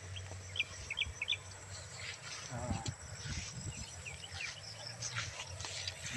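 A bird chirping outdoors: a quick series of short, high chirps in the first second and a half, then a few more chirps around three seconds in.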